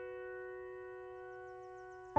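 Music: a single keyboard chord, sounding like piano, held and slowly fading, in the soft intro of a hardstyle track.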